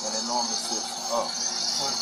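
A man speaking over a garbage truck running, with a steady high hiss and a low hum underneath throughout.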